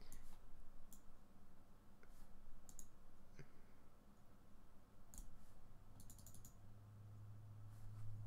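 Computer mouse clicking: faint, scattered single clicks, with a quick run of several about six seconds in.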